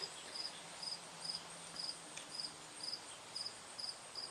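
Faint insect chirping: short high chirps of one steady pitch, repeated evenly a little over twice a second.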